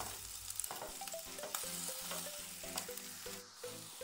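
Chopped garlic and green chillies frying in oil in a frying pan, a faint steady sizzle, with a wooden spatula stirring and scraping the pan and a few light clicks.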